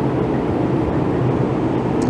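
Steady background drone with a low hum underneath, with no speech.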